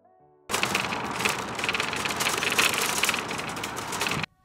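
Loaded metal shopping cart rolling over rough parking-lot asphalt: a loud, continuous rattle of its wheels and wire basket that starts abruptly about half a second in.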